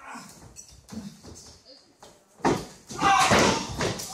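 A body hitting the wrestling ring's mat with a sudden loud slam a little past halfway, followed at once by spectators yelling. Lighter knocks on the ring come before it.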